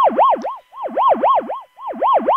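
Soundgin synthesizer chip playing a complex sound made by combining amplitude and frequency modulation: an electronic tone warbling up and down about four times a second, its volume dipping about once a second.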